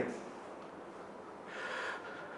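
Faint room tone, then a man's audible intake of breath lasting about half a second, near the end.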